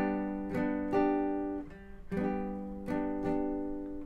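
Classical nylon-string guitar strumming a G major chord inversion (fourth string at the fifth fret, third string at the fourth, second string at the third) in the chorus rhythm of down, down, up, played through twice, each strum ringing on into the next.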